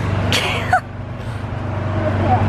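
An engine running steadily: a low hum that grows slightly louder, with a brief high sound falling in pitch about half a second in.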